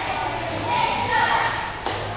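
Indistinct voices echoing around a large indoor pool hall over a steady low hum, with one sharp click near the end.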